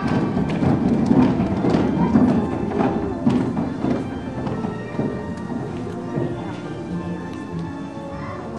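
A crowd of young children clapping and thumping their feet, with voices mixed in. It is busiest over the first half and eases off later.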